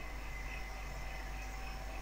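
Quiet, steady room tone: a low hum and faint hiss with a thin, faint high whine running through it.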